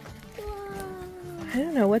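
A person's voice holding one long drawn-out vowel that slides slowly down in pitch, followed near the end by the start of sing-song speech.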